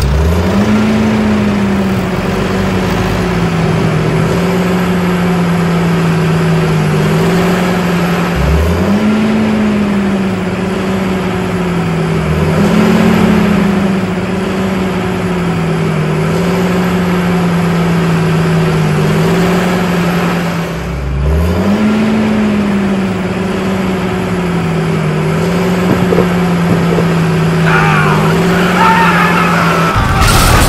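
A tractor engine sound effect running at a steady low pitch that wavers slightly. The pitch rises sharply four times, like the engine revving up and pulling away.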